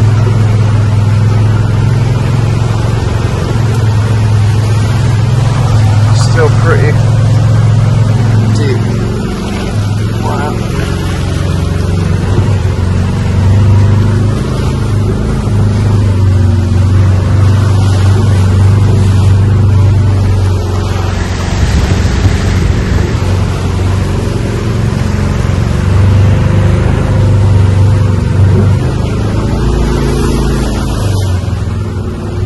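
Golf-cart taxi running through floodwater: a steady low drone from the cart, with water sloshing around the wheels. The drone dips briefly about ten seconds in.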